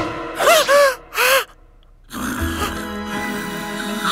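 A sudden loud hit, then three short cartoon-character vocal sounds, each rising and falling in pitch, like startled gasps. After a brief pause, soft background music comes in about halfway through.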